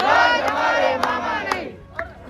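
A crowd of protesters shouting a slogan together in one loud, sustained call that fades out near the end. Sharp beats land about twice a second under it.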